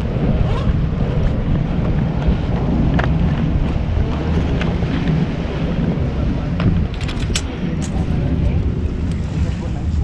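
Wind buffeting the microphone as a steady low rumble, with a few sharp clicks about seven seconds in from a pocket tape measure being pulled out and handled.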